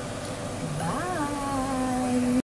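A single drawn-out vocal call begins about a second in. It rises briefly in pitch, then holds at a steady, slightly falling pitch to the end.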